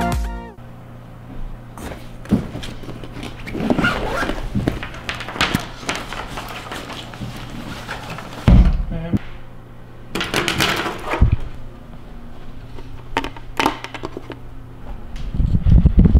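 Electronic music cuts off in the first half-second. Then comes handling noise and scattered knocks of a backpack and gear on a wooden table, with one heavy thump about halfway through.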